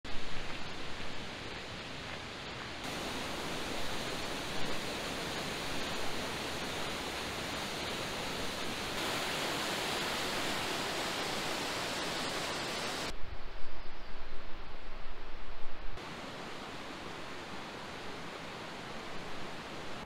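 A string of short outdoor ambiences, each a steady rushing hiss, changing abruptly every few seconds. The loudest, brightest stretch, about nine to thirteen seconds in, is white water of a mountain stream cascading over boulders. It is followed by a few seconds of lower, uneven rumbling, then a quieter steady hiss.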